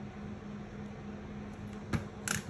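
Steady low electrical or fan hum with a faint even hiss of room noise, and one short sharp click just before the end.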